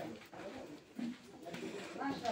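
Quiet, indistinct talking voices, in short broken phrases.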